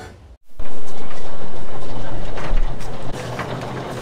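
Corrugated steel roll-up shutter door rattling loudly in its guides as it is pushed up for about two and a half seconds, stopping suddenly.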